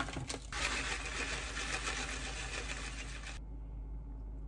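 Granola poured from a pouch into a ceramic bowl: a steady dry pour for about three seconds that stops suddenly, after a few clicks of the bag being handled at the start.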